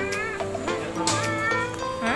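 Light background music with steady sustained notes. Over it comes a high, wavering, whining voice twice: once at the start and again about a second in.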